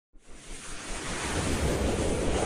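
Intro-sequence sound effect: a rushing whoosh with a deep rumble beneath it, building up from silence at the start.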